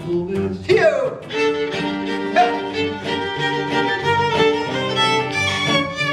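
Klezmer violin playing a lively bowed melody over acoustic guitar accompaniment.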